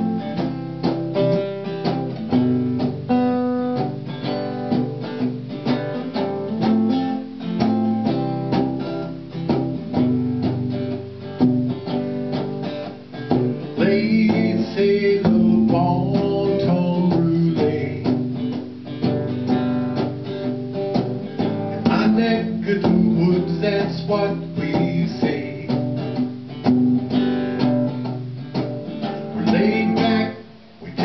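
Acoustic guitar strummed in a steady rhythm, playing the instrumental intro of a song straight after a count-in.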